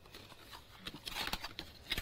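Faint rustling and light tapping of die-cut cardstock pieces being handled on a craft mat.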